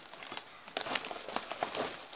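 A crinkly bag being handled and rummaged, giving irregular rustling and small crackles.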